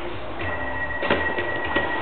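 A steady high-pitched electronic tone comes on about half a second in, over scattered taps and rustles of small hands handling a cardboard toy box.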